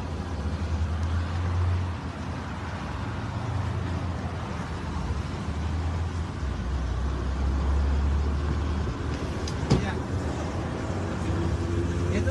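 Steady low rumble of an idling vehicle and road traffic, heard from inside the car's cabin, with a single sharp click about ten seconds in.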